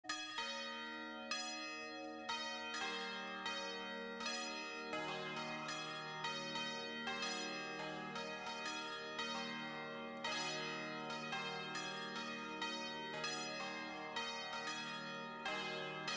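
Bells ringing in a steady succession of struck notes, about two a second, each ringing on beneath the next.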